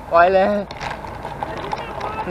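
A short spoken phrase near the start, over steady wind and road noise on a moving bicycle's action camera.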